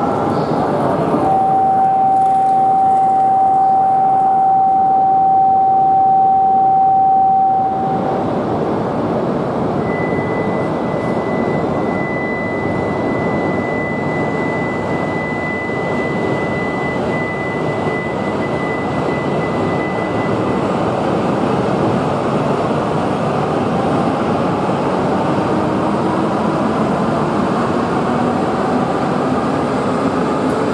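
A steady electronic tone on the platform holds for about seven seconds and stops. Then the coupled E5/E6 shinkansen pulls out with a rising motor whine as it gathers speed.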